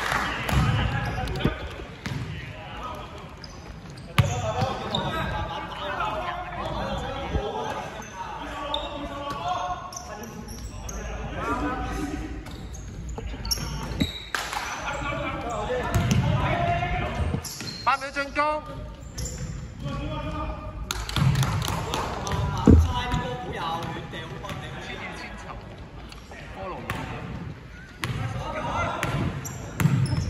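Basketball game in a large indoor hall: a basketball bouncing on the wooden court, with players' shouts and chatter and several sharp knocks, the loudest a little past the three-quarter mark.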